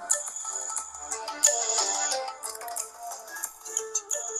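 A music track played at full volume through the iPhone 5s's single mono loudspeaker. It sounds thin, with no bass, and has no crackling or distortion.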